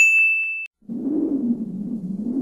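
A bright ding sound effect rings out as the music stops, a single high tone held for well under a second. About a second in, a low wavering synthesizer tone starts, sliding up and down in pitch.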